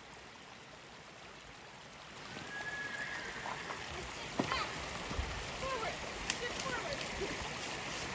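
A shallow, rocky creek running, with a horse's hooves splashing through the water and knocking on the stones from about two seconds in.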